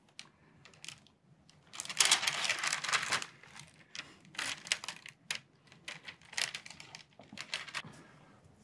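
Handling noise: irregular bursts of rustling and crinkling, the longest and loudest about two to three seconds in, then shorter scattered ones.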